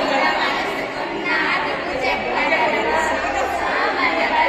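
A group of students chattering, many voices talking over one another at once with no single speaker standing out.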